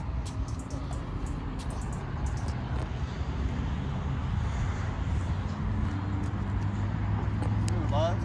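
Steady low rumble of an idling car engine, a little louder in the second half.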